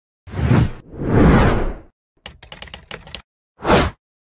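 Logo-intro sound effects: two whooshes, then a quick run of about nine sharp clicks, like typing, and a short final whoosh just before the end.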